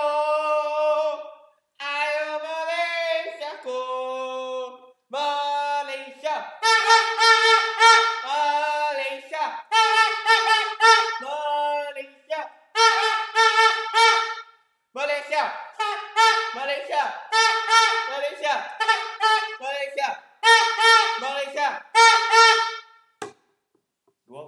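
Loud pitched cheering with no words: a few lower, gliding notes, then short high notes on nearly the same pitch, repeated about twice a second in a chant-like rhythm.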